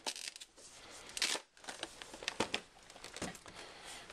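Cardboard collector's box being handled and its front flap opened, with rustling and crinkling of the packaging and a few light clicks; the loudest rustle comes about a second in.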